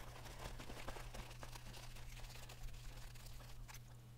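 Faint handling noise: a metal lathe tailstock body turned over in the hands on a paper towel, giving a few light clicks and soft rustles over a steady low hum.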